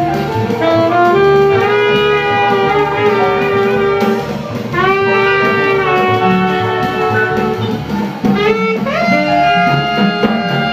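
Two saxophones playing a slow melody together in long held notes, over double bass and drums.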